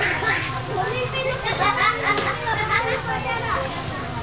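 Many children's voices talking and calling out at once, high-pitched and overlapping.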